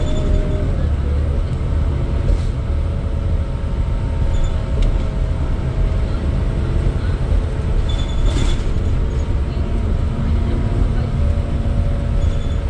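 Cabin sound of a 2008 New Flyer D40LFR diesel bus under way: the steady low rumble of its Cummins ISL engine and road noise, with a few short rattles about two, four and eight seconds in.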